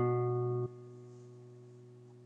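A single guitar note, B (German H), played at the second fret of the A string and ringing out. Its level drops sharply about two-thirds of a second in, then it rings on quietly and slowly fades.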